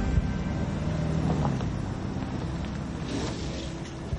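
A car driving up and pulling in, its engine running low and steady with a brief swell of road noise near the end.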